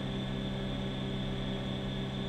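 Steady electrical hum with a faint thin high tone and an even hiss: the background of running electronic test equipment.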